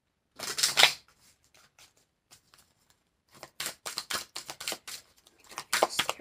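Oracle cards being shuffled by hand: a loud rustle of the deck about half a second in, then from about three seconds in a fast run of quick card slaps and flicks.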